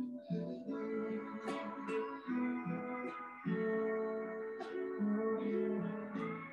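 Background instrumental music: slow plucked-string notes, each held and changing every half second or so.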